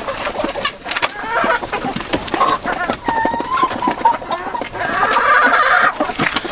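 A flock of white Leghorn chickens clucking and calling, with many short calls overlapping and a longer, harsher call near the end. Scattered light clicks run through it.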